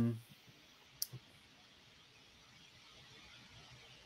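A sharp click about a second in, followed at once by a fainter second click, against faint steady room hiss.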